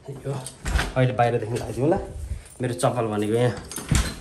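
Mostly speech in a small indoor space, with a low thump about three-quarters of a second in and a short knock near the end.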